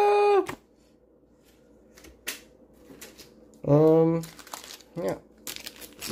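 A man's held wordless vocal sound cuts off about half a second in, followed by faint clicks and rustling of trading cards and foil booster packs being handled, with a short low hum of voice around two-thirds of the way through and a few quick clicks and crinkles near the end.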